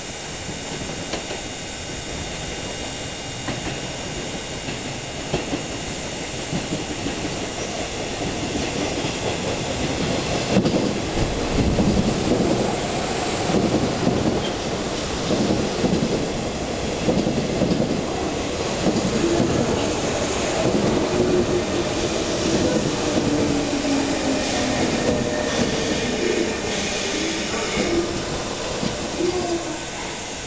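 JR 201 series electric train pulling into the station, the rumble of its wheels on the rails building up to its loudest about a third of the way in. In the last third a tone falls steadily in pitch as the train slows for its stop.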